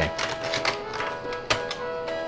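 MIDI music from a laptop's speaker, a few held synthesized notes, with a few sharp clicks, the loudest about one and a half seconds in.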